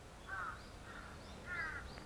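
A bird calling three times, with short calls about two-thirds of a second apart, faint in the background.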